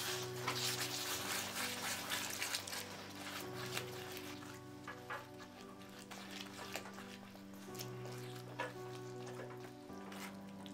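Soft background music with long held notes, over a spatula stirring a watery vegetable mash in a non-stick pan; the sizzle of the mixture fades after the first few seconds.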